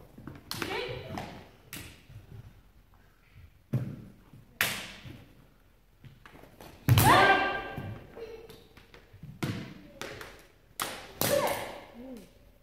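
Naginata players shouting kiai during a bout. Several loud yells sound, the loudest and longest about seven seconds in. Between them come sharp knocks of practice naginata striking armour and each other, and thuds of feet on the wooden floor.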